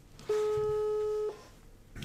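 Telephone ringback tone as an outgoing call rings out: one steady beep about a second long that starts and stops abruptly.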